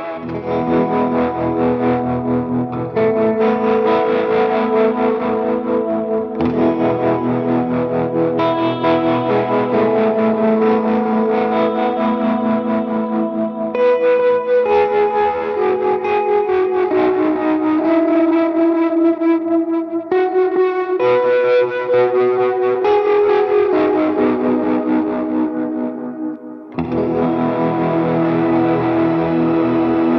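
Gretsch electric guitar played through an effects rig, sustained chords and melody notes with echo. The sound cuts abruptly from one take to the next several times, with a brief dip in level just before the last change.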